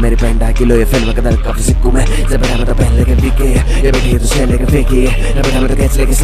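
Male rap verse in Hindi over a hip-hop beat, with a steady deep bass line and regular drum hits.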